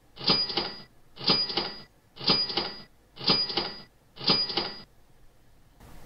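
PowerPoint's built-in Cash Register sound effect played five times, about once a second, each ring lasting about half a second, one for each countdown number as it disappears.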